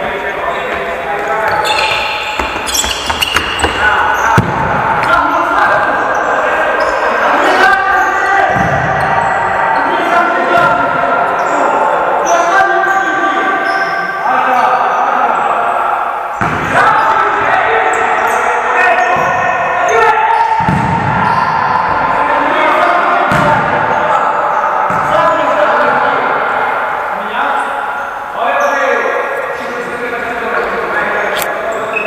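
Indoor futsal being played in an echoing sports hall: players shouting to each other over repeated ball kicks and bounces on the hard court floor.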